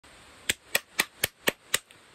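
Six sharp, evenly spaced clicks, four a second, over a faint hiss.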